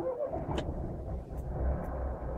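Carburetted car engine started again right after stalling, then idling with a steady low rumble. The owner blames the repeated stalling on poor-quality 80-octane petrol.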